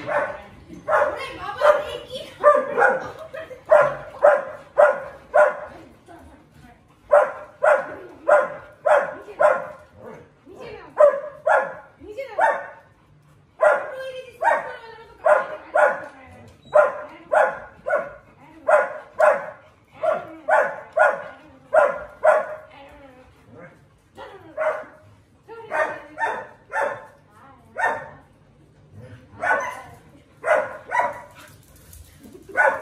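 Dogs barking over and over in short, quick calls, about two or three a second, with a few brief pauses.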